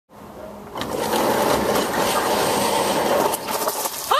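Roll-up rear door of a box truck rattling as it is rolled open, a steady clattering rush of about two and a half seconds that starts just under a second in.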